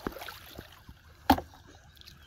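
A big fish dropped into a plastic tub: one loud, sharp thump about a second and a quarter in, with a brief ringing of the tub. Faint sloshing of shallow water around it.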